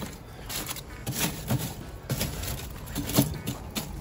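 Lump charcoal clinking and shifting as wood chunks are pushed down into the coals of a kamado grill by hand and with a metal tool: a string of irregular knocks and scrapes.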